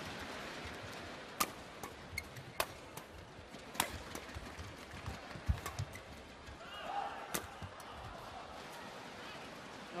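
Badminton rally: sharp racket-on-shuttlecock hits a little over a second apart, with a low thud about halfway through, over steady arena background noise.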